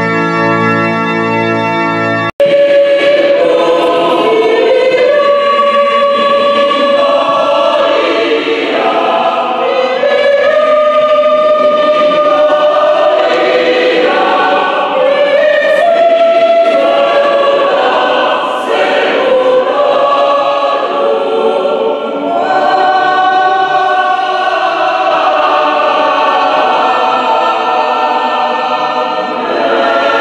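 A held pipe-organ chord for about two seconds, breaking off abruptly, followed by a choir singing a sacred hymn in a reverberant church.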